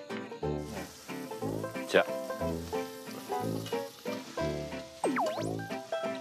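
Minced garlic and then diced beef sizzling in perilla oil in a pot, the frying hiss starting about half a second in, under louder bouncy background music. A swooping whistle-like sound effect comes near the end.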